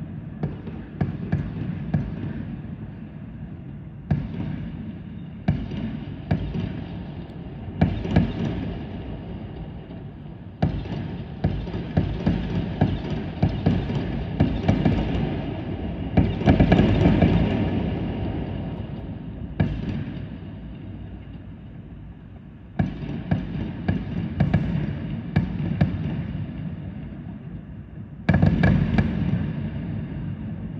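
Fireworks bursting in quick succession: a string of sharp bangs with crackling in between. The barrage is thickest in the middle, eases off briefly past the two-thirds mark, then picks up again.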